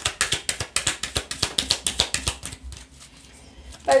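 A deck of oracle cards being shuffled by hand: a quick run of card clicks, about eight a second, that stops nearly three seconds in.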